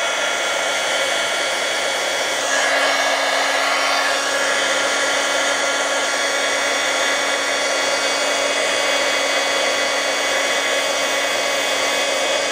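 Handheld embossing heat tool running steadily, its fan blowing hot air over card stock to melt metallic embossing powder: an even whir with faint steady whining tones.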